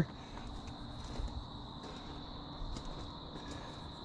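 Faint outdoor ambience: crickets trilling steadily and high, over a low rumble with slight swells.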